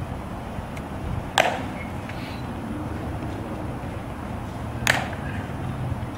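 Two sharp, ringing clicks about three and a half seconds apart off the stone plaza, typical of the metal-tapped heels of Tomb sentinels' shoes clicking together in drill, over a steady low background rumble.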